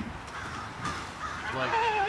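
A young man's raspy, strained cry starting about one and a half seconds in, voiced while heaving an overturned canoe over; before it, only faint background noise.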